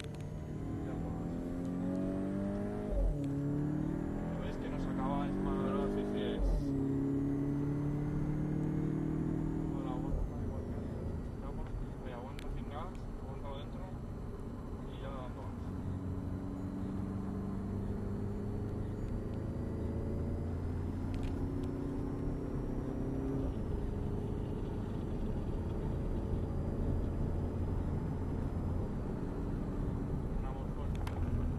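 Volkswagen Golf VII GTI's turbocharged 2.0-litre four-cylinder engine heard from inside the cabin, accelerating hard. The pitch climbs and drops back at quick DSG upshifts about three, six and ten seconds in, then rises steadily as the car gathers speed on the straight.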